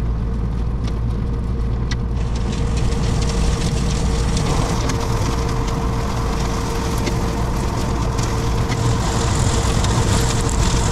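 Tractor engine running steadily while a hydraulic side-arm cutter head mows dry brush on a ditch bank. About two seconds in, a hiss from the cutting grows louder over the engine.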